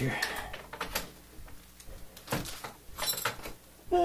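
Scattered metal clicks and knocks as a scope mount is handled and fitted onto a rifle's picatinny rail while its clamp knobs are loosened. There is a cluster of clicks at first, another knock a little after two seconds, and one with a brief metallic ring about three seconds in.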